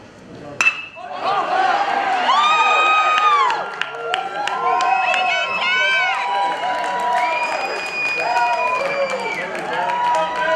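A metal bat's sharp ping as it meets the pitch, about half a second in, followed by spectators shouting and cheering for the hit.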